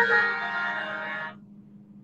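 A ringing, chime-like musical tone with several overtones starts suddenly and dies away about a second and a half later, over a steady low hum.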